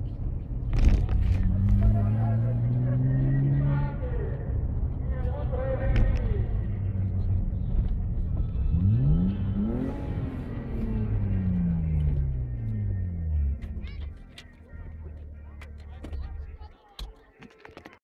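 In-car sound of a BMW 320i E36's 24-valve straight-six pulling at low speed. It revs up from about a second in, eases off, revs up sharply again about nine seconds in, then winds down slowly. Near the end the engine note falls away to a low idle with a few clicks.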